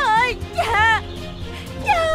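A high, wavering voice in drawn-out rising and falling tones, two phrases, over steady sustained background music.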